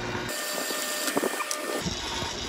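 Electric motor of a motorized case prep center running steadily, spinning a primer-pocket cleaning brush inside a fired brass case. A few light clicks come near the middle.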